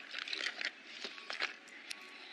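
Paper rustling and crinkling in short bursts, followed by a few short clicks.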